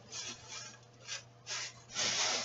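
Faint rustling and rubbing, a few short scrapes spread across a couple of seconds, as someone rummages through bought items looking for one.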